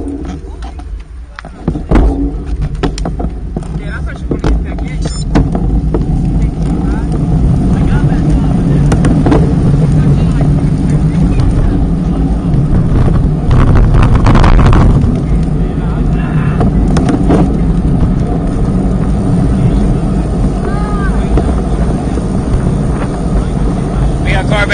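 Wind buffeting the microphone of a camera mounted on a road bike's handlebar, building quickly as the bike pulls away and picks up speed, then a steady rushing noise with a louder swell about halfway through. A few sharp clicks near the start.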